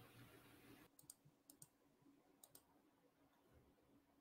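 Near silence: faint room tone, dropping lower about a second in, with a few faint clicks.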